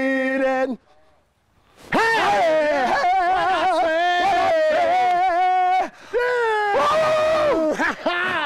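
Men singing unaccompanied in loud, long drawn-out notes with a wavering pitch, an improvised song; the voices break off about a second in and start again about a second later.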